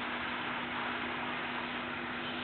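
Steady hiss with a faint, steady low hum underneath and no distinct events: the background noise of the recording.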